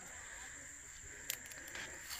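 Quiet outdoor background with a faint, steady high-pitched insect hum, and one light click a little past halfway.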